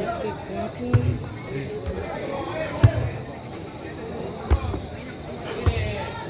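A football being struck by players in a footvolley rally: four sharp thuds, roughly a second and a half apart, the second the loudest, over the steady chatter of spectators.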